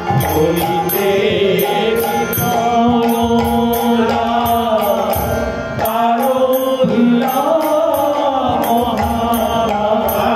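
Bengali padavali kirtan: a man's voice singing a devotional melody, held by a harmonium, over an even beat of small hand cymbals. The singing breaks off briefly a little past halfway, then resumes.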